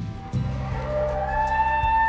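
Bull elk bugling: a whistled call that starts about half a second in, rises and holds high, with soft background music underneath.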